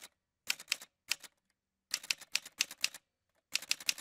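Typewriter sound effect: runs of rapid keystrokes, several clicks in quick succession, separated by short pauses.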